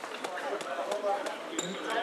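Handball bouncing on the wooden floor of a sports hall, a series of irregular knocks, with voices in the background.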